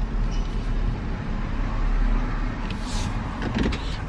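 Car engine and road noise heard from inside the cabin, a steady low rumble as the car rolls slowly forward.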